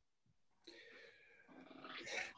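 Near silence over a video-call connection, with a faint drawn-out pitched sound starting just over half a second in, and a voice beginning to come in near the end.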